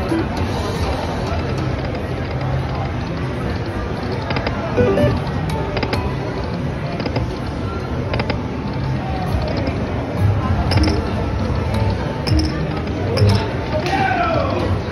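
Aristocrat Lightning Link High Stakes slot machine running through several spins, with its electronic music and sound effects over the chatter of a casino floor. A few sharp clicks fall in the middle and later part.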